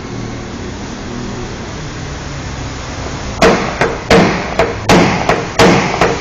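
A small hammer tapping a punch held against a car's sheet-metal roof edge in paintless dent repair: after a steady low hum, about six quick, sharp taps in the second half, each with a short ring, working the dent level.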